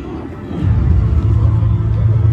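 A car engine running close by. From about half a second in it holds a steady, loud, low drone.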